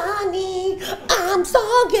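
A woman singing in a high voice into a microphone: one long held note, then a wavering phrase with bending pitch.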